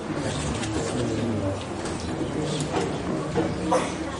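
Low, indistinct voices murmuring, with a couple of short clicks in the last second and a half.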